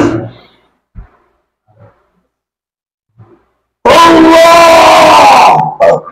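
Mostly quiet with a few faint knocks, then about four seconds in a man lets out a loud, long, steadily held cry lasting about a second and a half.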